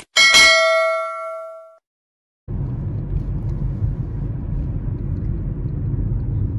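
A click sound effect followed by a bright bell ding that rings out and fades over about a second and a half. After a short silence, the steady low rumble of a car driving starts, heard from inside the car.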